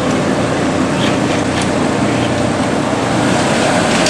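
Steady rushing drone of fans and machinery in a cinema projection booth, with a faint low hum and a couple of light clicks.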